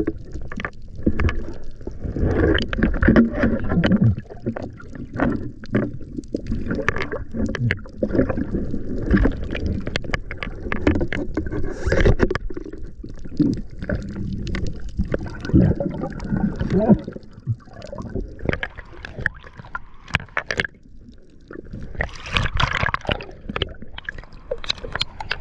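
Water sloshing and gurgling against an underwater camera housing as a spearfisher swims, with frequent small knocks and bumps of gear. A louder, brighter stretch of splashing comes near the end, as the camera nears the surface.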